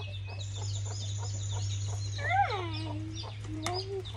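Chickens clucking, with one drawn-out falling call about two seconds in and a short rising call near the end. The hen is upset: a snake has just eaten one of her eggs from the laying box.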